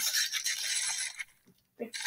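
A high hissing noise that cuts out for about half a second after a second and a quarter, then starts again near the end.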